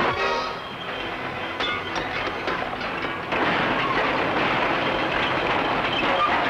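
A bulldozer's engine running with a dense mechanical clatter under dramatic music, the noise jumping louder about three seconds in.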